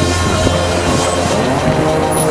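Background music mixed with the engines of cars driving along a dirt track.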